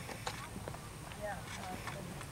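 Horse's hooves striking turf at a trot, a few scattered soft thuds.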